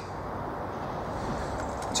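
Steady low background hum and hiss with no distinct event.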